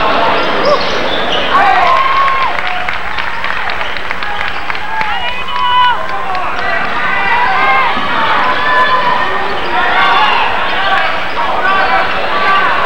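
Basketball game sound on a gym floor: players running and a ball bouncing, with short squeaks of sneakers on the hardwood, under the chatter and shouts of the crowd in the stands. A steady low hum from the VHS recording runs beneath it.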